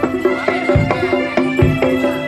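Live East Javanese bantengan accompaniment: rapid drum beats, about five a second, over sustained ringing gong-like metal tones.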